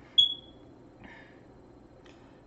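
A single short, high-pitched ping that rings out and fades within half a second, followed about a second later by a faint brief rustle.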